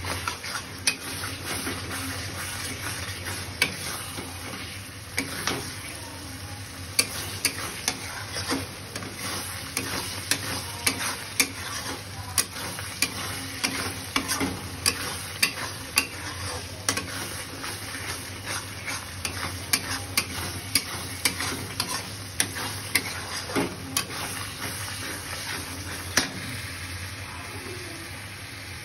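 Metal spatula stirring and scraping chicken in thick masala gravy in a wide metal pan. Irregular clinks of the spatula on the pan sound over a steady sizzle of the frying masala, and the clinks thin out near the end.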